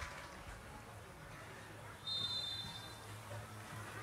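Faint open-air ambience at a football ground, with a steady low hum. About halfway through comes one short, high, steady tone lasting under a second.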